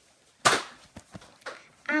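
One loud, sharp click about half a second in, dying away quickly, followed by a few faint ticks.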